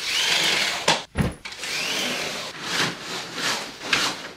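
Window shades being lowered: a whirring rush that rises and falls in pitch, twice, with a couple of knocks between them.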